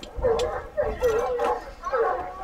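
Hunting hounds baying in repeated, wavering cries.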